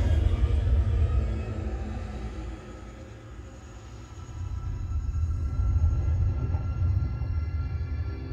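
A film soundtrack playing through a home-cinema surround system: a sudden loud hit, then a deep, heavy rumble under faint sustained music. The rumble fades about halfway through and swells back up near the end.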